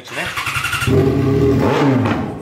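Yamaha XJ6 inline-four engine started up: it catches about a second in and settles into a loud idle through an open exhaust pipe with the silencer removed.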